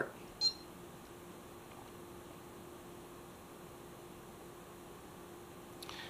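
A short electronic beep from a Bully Dog GT gauge tuner as its Start button is pressed, about half a second in. After that only faint room tone with a steady low hum.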